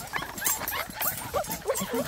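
Several penned puppies whining and yipping at once, many short, high, rising cries overlapping one another, the sound of pups fretting to be let out.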